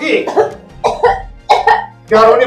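A person coughing a few times in short, sharp bursts, over a faint background music drone.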